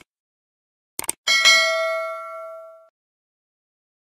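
Subscribe-button animation sound effects: quick mouse-click sounds, then a bright notification-bell ding about a second in that rings out and fades over about a second and a half.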